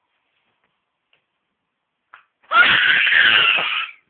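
A loud scream about a second and a half long, starting about two and a half seconds in after near silence and cutting off sharply.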